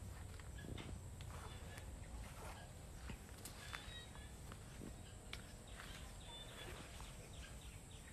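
Faint outdoor ambience: a steady low rumble with scattered light clicks and a few faint, short bird chirps.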